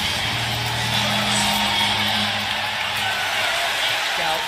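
Music with held low guitar notes over a steady arena crowd din, heard through a basketball game broadcast at tip-off.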